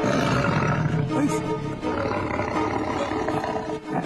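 A tiger roaring, a dubbed-in sound effect, over dramatic background music.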